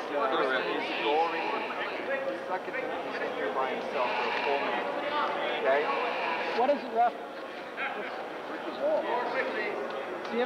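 Several people talking at once in a large gymnasium, the voices overlapping and indistinct.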